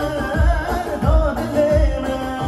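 Live amplified Kurdish wedding music: a male singer sings into a microphone over a band backing. A wavering melodic line runs over a heavy recurring bass beat, played loud through a loudspeaker system.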